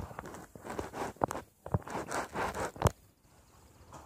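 Close rustling and scraping with several sharp knocks, stopping about three seconds in, leaving faint room tone.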